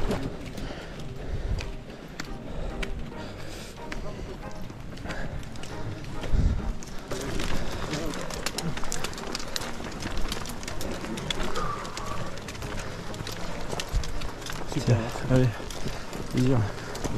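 Trekking-pole tips clicking on stony ground and footsteps of a crowd of trail runners hiking uphill, with background chatter among them. The clicks grow much more frequent about halfway through.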